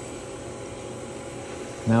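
Pool filter pump running steadily at high speed on the equipment pad, a steady whirring hum. The pump has just ramped up for spa mode.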